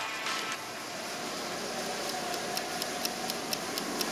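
Background music cuts off about half a second in, leaving a steady background hiss with a faint steady tone and light, evenly spaced ticks in the second half.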